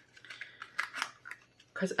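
A few small, sharp clicks and ticks of handling, spread through a pause in speech, with a voice starting again near the end.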